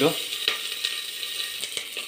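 Sliced onions sizzling in hot oil in an aluminium pressure cooker pot: a steady hiss with a few faint clicks and crackles.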